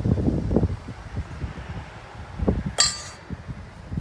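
A metal spoon strikes a stainless steel mixing bowl once, a sharp ringing clink about three-quarters of the way in, while meatball mixture is scooped out; softer handling thuds come before it.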